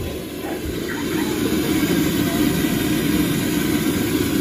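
Food deep-frying in a large wok of hot oil, the oil bubbling and sizzling steadily; it builds over the first second or two.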